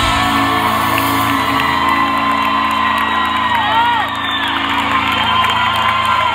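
Live rock band's last chord ringing out as sustained guitar notes, with the crowd whooping and cheering over it.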